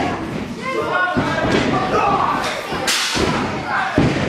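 A few heavy thuds of wrestlers hitting the wrestling ring's mat, the sharpest a little before three seconds in, over voices from the crowd in a hall.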